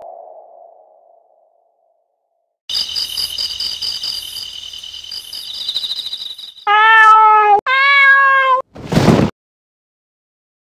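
Cat sound effects: a high, steady shrill sound for about four seconds, then two loud, drawn-out cat meows, each about a second long, and a short harsh noisy burst just after them.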